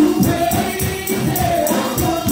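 Live gospel music: singing over a steady percussion beat of about three hits a second.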